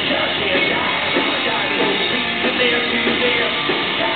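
Live rock band playing loud with electric guitar, drums and vocals, recorded from the crowd on a compact digital camera's microphone.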